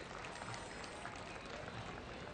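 Faint, steady outdoor street background noise with no distinct event standing out.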